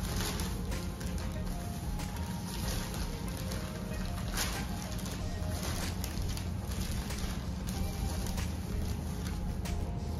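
Quiet background music with a steady low bass throughout, over a few light clicks and rustles of food and a plastic glove being handled on a wooden board.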